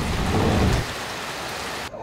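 Steady rain hissing on a water surface, with a deeper rumble under it for about the first second; the sound cuts off abruptly near the end.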